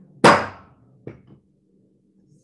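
A gavel struck once to adjourn the meeting: a single sharp, loud knock with a brief ring, followed about a second later by a much fainter knock.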